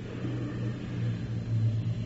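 Steady low hum with faint hiss: the background noise of an old recording of a spoken talk.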